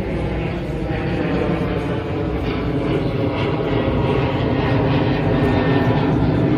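A steady engine drone that slowly grows louder.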